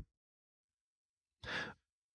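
Silence, then about one and a half seconds in a single short, soft breathy exhale from a person, like a sigh.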